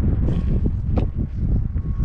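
Wind buffeting the microphone: a steady low rumble with no motor whine audible, and a short sharp click about a second in.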